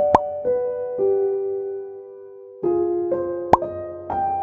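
Soft electric-piano background music holding slow, sustained notes, with two short rising 'pop' sound effects of the kind used when a chat bubble appears, one about a quarter second in and one just before the end.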